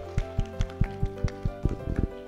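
A few people clapping at an even pace of about five claps a second over soft background music with long held notes.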